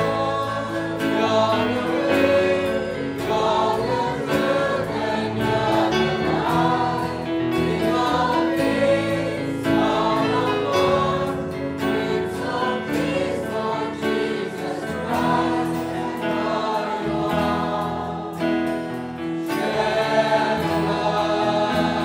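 A choir singing a Christian worship song.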